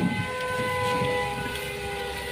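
A horn sounding two steady notes together, held for about two and a half seconds.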